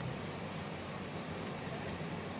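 Steady rushing of whitewater river rapids, an even wash of noise with no strokes or tones in it.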